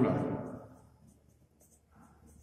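Marker pen writing on a whiteboard: a string of short, faint scratchy strokes.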